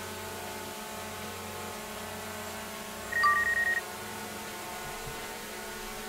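DJI Mavic Air 2 drone hovering, its propellers giving a steady, many-toned hum. A little past halfway, a short electronic beep is followed by a quick run of higher beeps lasting under a second.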